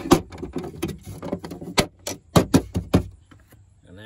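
Hard plastic clicks and knocks in a quick, irregular series as a Toyota Tundra's glove box tray is worked back onto its hooks. They stop a little after three seconds in.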